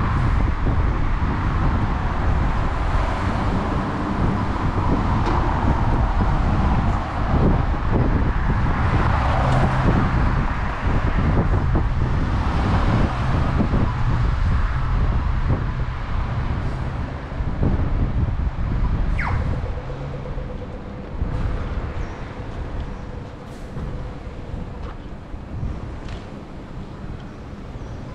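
Street traffic at a city intersection: a steady low rumble of passing vehicles that eases off after about twenty seconds.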